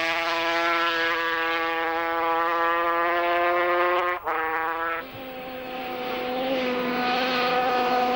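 Racing motorcycle engine held at high revs, a steady high-pitched buzz that climbs slowly, dips sharply for an instant about four seconds in, then returns as a lower, quieter note that gradually builds.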